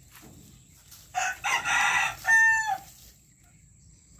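A rooster crowing once, starting about a second in: a rough, broken opening followed by a long held note that dips slightly at the end.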